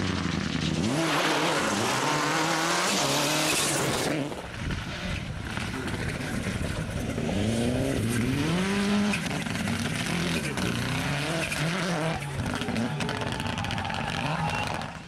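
Rally car engine revving hard, its note rising and falling again and again as the car is driven through the stage. A loud hiss in the first few seconds cuts off suddenly.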